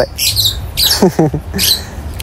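Birds calling: short, high chirps repeat about every half second to a second, with a short falling call lower in pitch about a second in.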